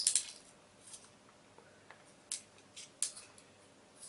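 A measuring rule scraping and clicking against a die-cast aluminium box lid as it is laid and shifted for measuring: a handful of short, sharp scrapes at uneven intervals, the loudest right at the start.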